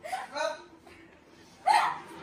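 A woman laughing in three short bursts, near the start, about half a second in, and near the end.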